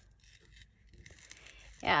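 Scissors cutting paper, heard as a few faint snips and small scratchy clicks, then a short spoken "yeah" near the end.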